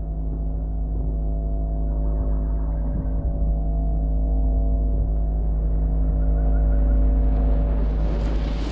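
Sustained drone of the trailer's score: a held chord of several steady pitches over a deep bass rumble, slowly swelling louder. A rising hiss comes in near the end.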